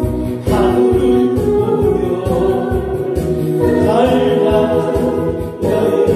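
A man singing a Korean trot song into a microphone over backing music with a steady beat. The sung phrase breaks off briefly near the end before the next one starts.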